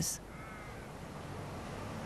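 A crow cawing faintly about half a second in, over a steady low outdoor hiss.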